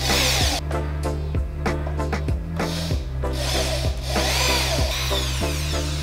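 Power drill driving screws into a wooden tabletop in two short runs, one right at the start and one about four seconds in, its pitch sweeping up and down. Background music with a steady beat plays throughout.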